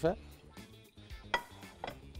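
Two sharp clinks of dishes knocked down on a counter, about half a second apart, each with a brief ring, over faint background music.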